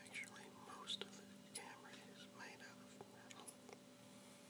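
A person whispering softly, with a few faint clicks: one about a second in and several more in the last second.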